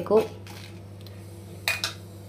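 A metal knife blade scraping and clattering twice in quick succession against a hot griddle, turning dry red chillies and curry leaves. A low steady hum runs underneath.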